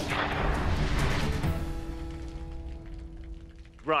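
A sharp crack opening into a long, deep boom that dies away over about three seconds. It is laid over background music with held notes, a gunshot-style impact effect for a slow-motion shot.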